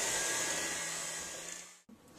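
Electric hand mixer running in a bowl of cake batter for a brief mix, then switched off near the end.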